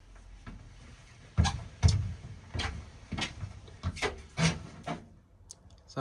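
Broom sweeping the bare floor of a van, a run of irregular scraping strokes and knocks about every half second, the two loudest about one and a half and two seconds in.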